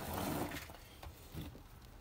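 Handling of a plastic plant pot and seed tray on a potting bench: a sharp knock at the start, then a brief scuffing rustle.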